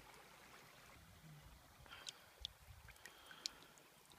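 Near silence: a small creek faintly trickling, with a few faint short ticks in the second half.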